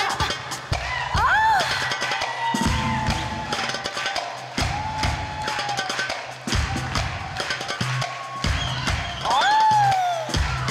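Live band music: an instrumental dance passage with a steady drum beat and a melody line that swoops up and falls back twice.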